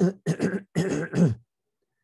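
A man coughing and clearing his throat: four short, rough bursts over about a second and a half.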